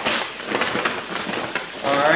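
Food frying in a skillet on the stove: a continuous crackling sizzle.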